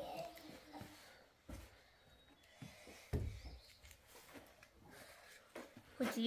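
Faint handling noises of a child packing camping gear on a wooden shelter floor: light rustling and three soft thumps, one of them as a plastic water bottle is picked up near the end.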